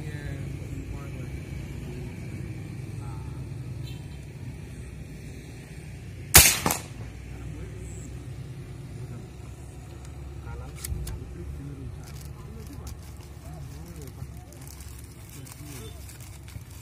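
A single shot from a pre-charged pneumatic (PCP) air rifle: one sharp crack about six seconds in, with a brief tail. The rifle is plausibly on its lowest power setting. A much fainter click follows about four seconds later.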